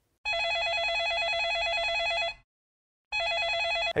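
Telephone ringing with a rapidly warbling electronic trill: one long ring, a short pause, then a second ring that cuts off when the call is answered.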